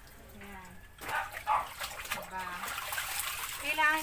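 Water splashing and sloshing in a plastic basin as clothes are dunked, squeezed and swished by hand, with a hose running into the tub.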